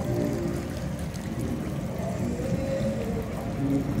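Live street music from a performer, with long held notes.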